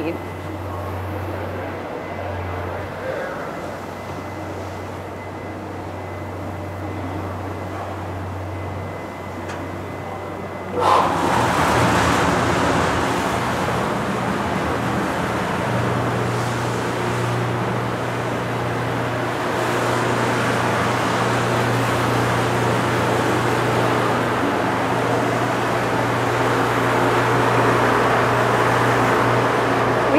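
A steady low hum, then, about eleven seconds in, a sudden, louder, steady wash of water being churned and splashed by the prop agitator in the stainless steel jacketed kettle, with the agitator's motor humming under it.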